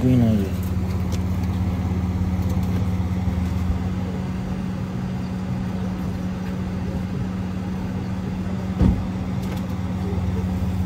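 Car engine idling steadily, a low even hum.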